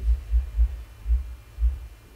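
Low, muffled thumping about twice a second over a faint steady hum, with no voice.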